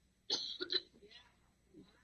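A man's short, breathy vocal sound lasting about half a second just after the start, the tail of a laugh or a throat clearing at the microphone.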